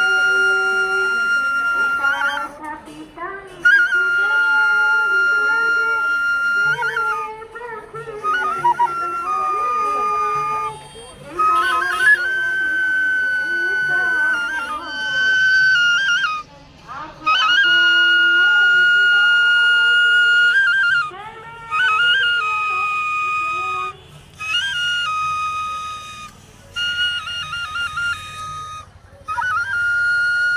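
Bamboo bansuri (transverse flute) playing a slow melody of long held high notes, each phrase ending in quick trills, with short breaks between phrases for breath.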